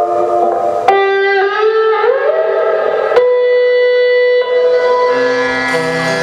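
Electric guitar played alone on a white Stratocaster-style guitar. A sharp note chord sounds about a second in and slides upward in pitch. A second struck note about three seconds in is held steady, and lower band notes come in near the end.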